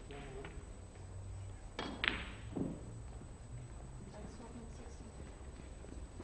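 A single sharp click about two seconds in, over low room hum and faint voices.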